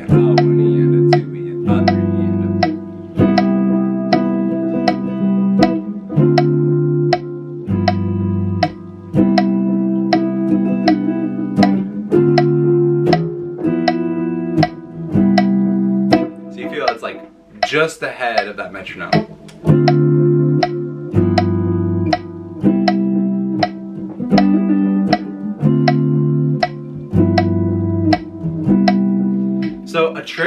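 Telecaster-style electric guitar strumming a looping Dm7–G13–Cmaj7 jazz-style progression over a phone metronome clicking steadily at 80 beats per minute. Each chord comes in a sixteenth note ahead of the beat. The playing breaks briefly about halfway through, then picks up again.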